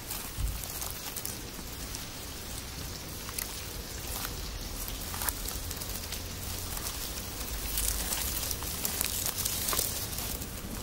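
Dense crackling, pattering rustle of a mass of young locust hoppers crawling through grass, from a nature documentary soundtrack played over a hall's loudspeakers, with a low hum beneath.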